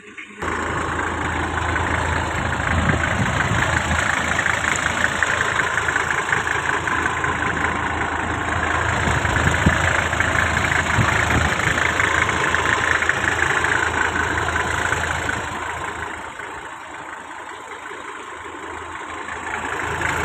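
1990 Toyota Land Cruiser engine idling steadily with an even mechanical clatter. It comes in abruptly just after the start and grows quieter for a few seconds past the middle before rising again near the end.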